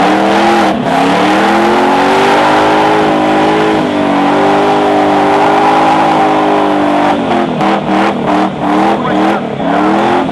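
Datsun 200B doing a burnout: the engine is held at high revs while the rear tyres spin on the asphalt with a continuous hiss and squeal. From about seven seconds in, the revs rise and fall about twice a second in repeated blips.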